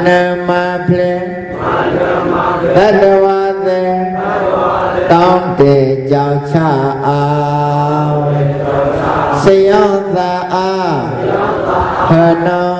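A monk chanting in a single male voice, in long held notes, with each phrase falling in pitch at its end.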